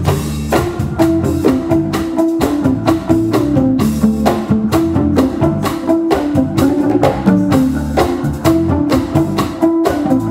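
A live jazz fusion band playing: congas and drum kit keep a busy rhythm under electric bass and electric guitar.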